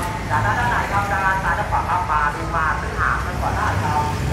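Street traffic: a steady low engine rumble from passing vehicles, with indistinct voices of people talking over it.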